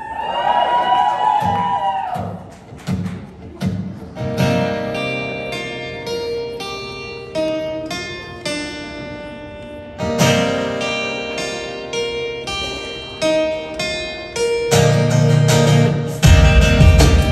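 Acoustic guitars playing a slow picked intro of single ringing notes, with fuller strummed chords about ten seconds in and again near the end. Brief whoops from the audience sound at the start.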